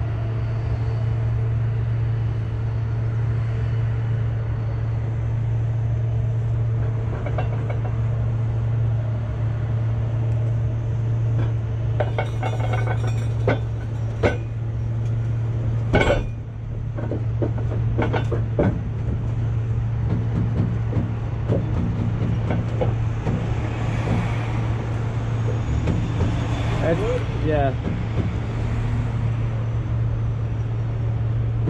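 Heavy diesel engine idling with a steady low drone, with a few sharp metal clanks about twelve to sixteen seconds in.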